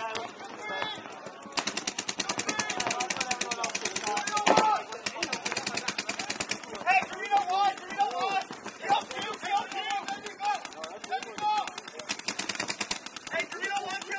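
Paintball markers firing in rapid strings of many shots a second: a long string from about one and a half seconds to six seconds in, and a shorter one near the end. Players shout in between.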